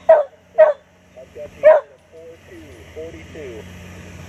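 A dog barking three times in quick succession, short sharp barks within the first two seconds.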